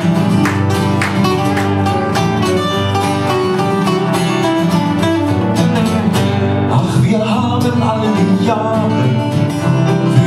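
Acoustic trio playing live with strummed and picked acoustic guitars in a steady folk rhythm, an instrumental passage of the song.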